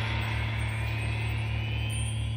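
Space-rock synthesizer drone: a steady, deep pulsing hum under high electronic tones that glide slowly upward in pitch.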